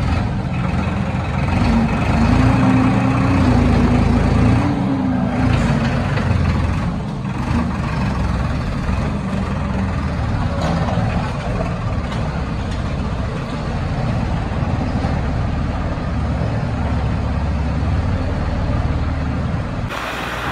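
Tractor diesel engine running steadily under heavy load, straining against a chain.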